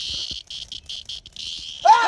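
An insect held in the hand buzzing in a steady, high-pitched drone. The drone breaks into short pulses for about a second, then stops just before a burst of laughter near the end.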